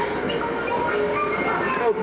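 Dark-ride vehicle running steadily along its track, with voices and held tones from the scene's soundtrack mixed over it.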